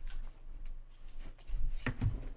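Handling noise from a person moving about at a desk: a run of light clicks and knocks, then heavier thumps near the end.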